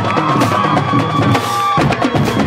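Marching drumline playing: snare drums, tenor drums and bass drums beating a fast, dense cadence. A held high tone sounds over the drums and stops shortly before the end, where the drum pattern changes.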